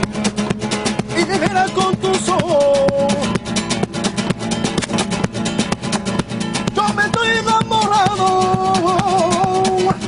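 Flamenco rumba on an acoustic guitar: fast, steady strummed rhythm, with a man's voice singing two long, wavering phrases over it, the first about a second in and the second from about seven seconds.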